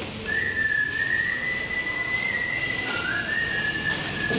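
A person whistling a tune in long held notes: one note starts about a quarter second in and wavers slightly for over two seconds, and another begins near the end, rising in pitch.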